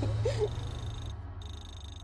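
Wind rumbling on the microphone in an open-top car, with a short vocal sound near the start. From about half a second in, thin high steady electronic tones sound over it, broken by a brief gap.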